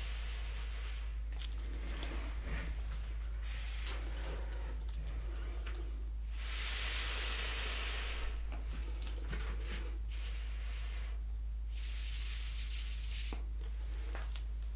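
Air blown through a long plastic tube with a nozzle onto wet acrylic paint, heard as several spells of hiss. The longest and loudest comes about halfway through. A steady low hum runs underneath.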